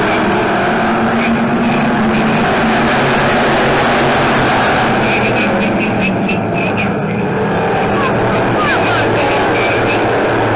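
A pack of dirt-track stock cars racing together, many engines running hard at once in a loud, steady, unbroken sound.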